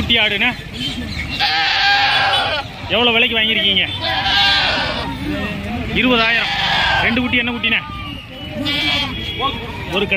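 Goats bleating several times, each call quavering in pitch, among men's voices.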